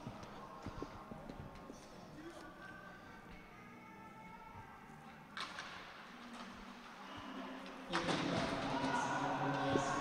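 Ice-hockey play heard through the rink microphones with no crowd: faint knocks and thuds of sticks, puck and boards, and scraping skates that grow louder from about five seconds in. The sound rises again near eight seconds as play runs along the boards into a hard body check.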